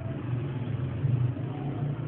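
A low, steady engine hum that comes up as the speaking pauses and holds at an even level.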